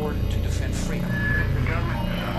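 A man's spoken address, a sampled speech, over a low, steady droning music bed.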